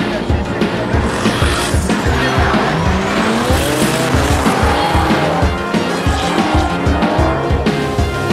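A red Corvette and a teal Nissan S14 drifting in tandem: engines revving, rising and falling in pitch, with tires squealing. Background music with a steady beat runs under it.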